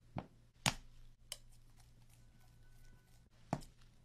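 Four short, sharp knocks of objects and tools being set down on a hard work surface during paint mixing; the loudest comes under a second in, the last near the end.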